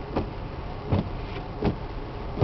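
Car cabin noise while driving: a steady low rumble of engine and tyres, with faint soft knocks about every three-quarters of a second.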